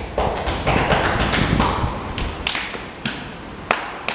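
A run of irregular taps and thumps, more than a dozen in four seconds, with a sharper click near the end.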